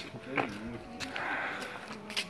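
Faint voices of people nearby, with a short call or word about half a second in, over a low murmur, plus a few light handling clicks and rustles.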